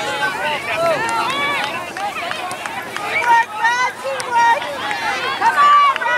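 Several voices talking and calling out at once, overlapping, with a few louder held shouts near the end: spectators and players during a soccer game.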